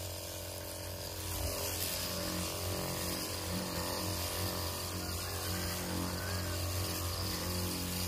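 Disinfectant sprayer running steadily: a constant pump hum under the hiss of the spray from the wand, which grows slightly louder about a second in as the mist is played over a pig cart's underside and deck.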